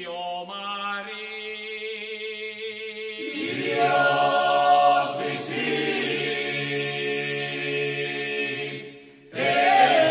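Male a cappella folk choir singing a traditional epic-lyric ballad. One or two voices hold long notes, then the full group joins in a sustained chord about three seconds in. Near the end they break for a breath and come straight back in together.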